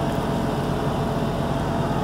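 Diesel truck engine idling steadily, a continuous low rumble.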